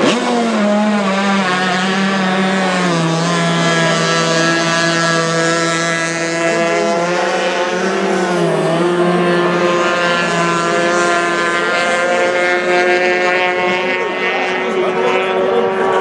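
High-revving outboard engines of F-350 hydro race boats running on the water, a continuous engine whine. The pitch steps down twice in the first three seconds, then holds steady.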